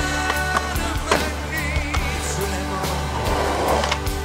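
Skateboard on pavement, wheels rolling and the board snapping and landing, heard over a music soundtrack; the rolling grows rougher and louder near the end.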